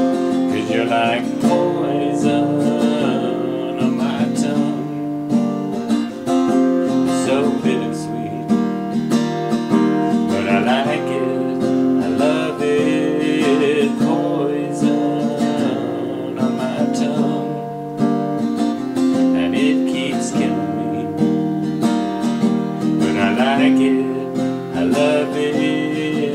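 Acoustic guitar played with strummed and picked chords in a steady rhythmic pattern, an instrumental stretch of a song.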